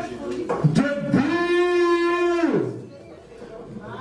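A man's voice calling out one long, drawn-out held note, in the style of an announcer introducing a darts player as he walks on. Brief bits of speech come just before it.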